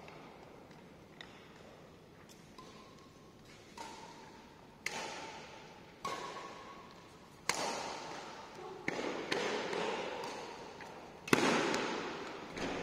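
Badminton rally: shuttlecock struck by rackets about once every second to second and a half, each hit echoing through a large hall, getting louder toward the loudest hit near the end.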